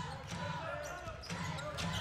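Indoor basketball game sound: a ball being dribbled on the hardwood court over the murmur of a small crowd's voices, with a few short knocks and squeaks from play.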